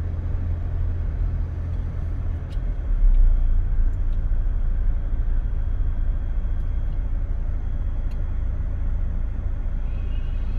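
Low, steady rumble of a car's engine and tyres on the road, heard inside the moving car's cabin, swelling a little about three seconds in, with a few faint ticks.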